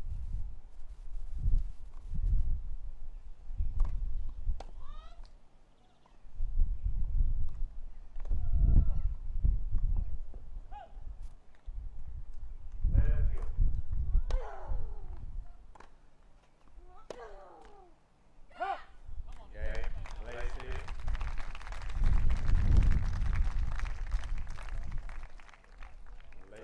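Tennis rally on a grass court: the ball is struck back and forth with sharp racket knocks and short grunting cries from the players. Near the end the crowd applauds for several seconds as the game point is won.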